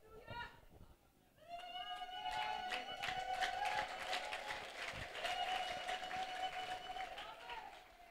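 Faint scattered hand clapping from a congregation, with a long steady high tone held underneath from about a second and a half in until just before the end.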